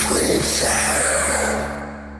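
A loud sound-effect sting on the channel logo, over a low steady hum. It hits at once and fades over about two seconds, then cuts off.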